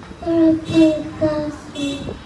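A young boy singing into a microphone in a high child's voice, in about four held notes of roughly half a second each.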